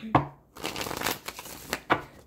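A deck of tarot cards being shuffled: a dense run of riffling clicks and rustle lasting about a second and a half. A short, sharp sound comes just before it at the start.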